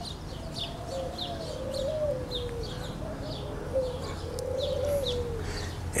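A dove cooing in low, drawn-out, wavering calls, with small birds chirping repeatedly in the background.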